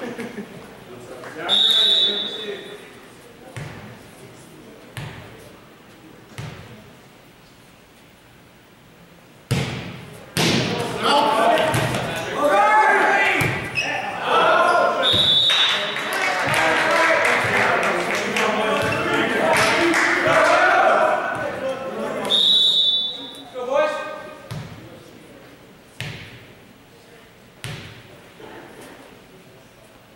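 A volleyball rally in a large gym. The referee's whistle sounds in three short blasts, about two seconds in, around fifteen seconds and around twenty-three seconds. Sharp hits on the ball echo through the hall, and players and spectators shout and cheer through the middle of the stretch.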